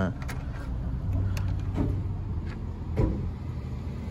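Low, steady hum of an idling car engine, with a few light clicks and faint voices in the background.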